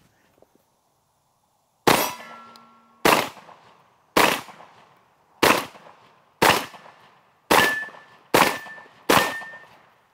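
Eight shots from a Benelli M2 semi-automatic shotgun firing double-aught buckshot. They start about two seconds in and come about one a second, quickening toward the end, with steel plate targets ringing briefly after several of the hits.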